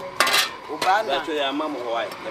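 A brief metallic clatter about a quarter second in, followed by a shorter knock, amid people talking.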